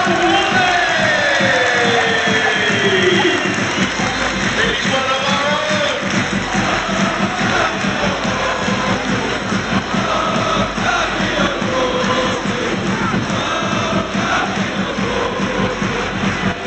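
Football stadium crowd cheering and clapping, with music playing over the stadium PA.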